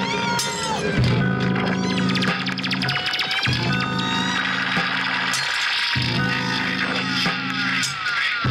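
Live experimental electronic improvisation: a low sustained chord loop that restarts about every two and a half seconds, with gliding tones sliding down and up above it and scattered sharp clicks.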